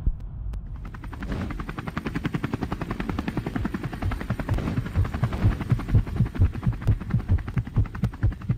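Helicopter rotor beating rapidly and steadily, coming in about a second in.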